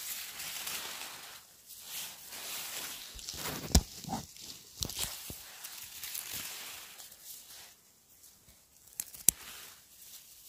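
Close rustling of dry grass, pine needles and moss as hands work through the forest floor. A few sharp snips of scissors cut yellowfoot (funnel chanterelle) stems, the sharpest about four seconds in and again near the end.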